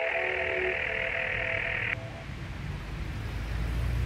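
A telephone ringing with a trilling ring for about two seconds, stopping sharply, over the last held notes of fading guitar music; a low rumble follows.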